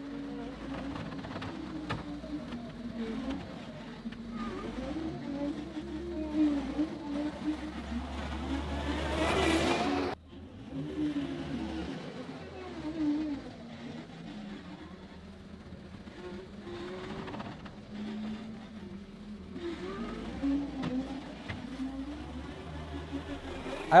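John Deere 325G compact track loader's diesel engine working under load while grading dirt, its pitch rising and falling as it pushes and backs up. A louder rush builds about nine seconds in and breaks off abruptly a second later.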